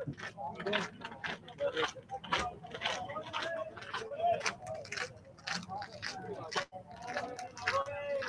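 Indistinct voices talking in the background, no words clear.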